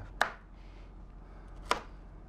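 Chef's knife cutting broccoli florets in half on a cutting board: two sharp knocks of the blade on the board, about a second and a half apart.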